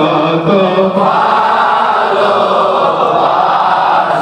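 Many men's voices chanting together in a Sufi sama, a continuous, loud group devotional chant.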